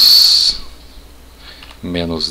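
A man's voice: a drawn-out, whistling 's' sound lasting about half a second at the end of a spoken word, then a quiet pause, then speech starting again near the end.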